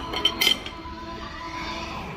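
Metal serving spoons clinking against a ceramic serving bowl and plates a few times in the first half-second, over steady background music.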